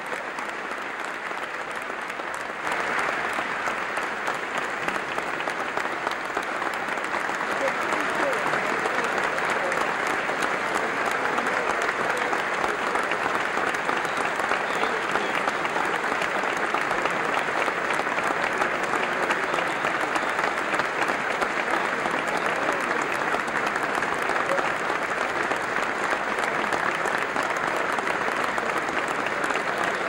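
Sustained applause from a large audience, a dense steady clapping that jumps louder about three seconds in and keeps going, with indistinct voices mixed in.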